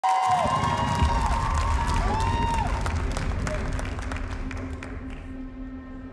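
Studio audience cheering and clapping, with a few long calls that rise and fall in pitch. The crowd noise dies away over the last second or so as a low steady musical tone begins.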